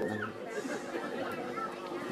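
A man's voice speaking in a Khmer dhamma talk breaks off just after the start. A quieter pause follows, with faint voices in the background.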